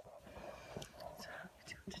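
A woman whispering softly, breathy and unvoiced, the words too faint to make out.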